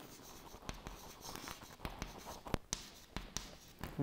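Chalk writing on a chalkboard: faint scratching with a scatter of short, sharp taps as the strokes are made, a few louder taps a little past halfway.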